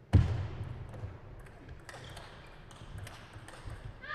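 Table tennis rally: a loud thump at the start, then a string of sharp, irregular clicks of the plastic ball off rackets and table, with low thuds of players' shoes on the court floor.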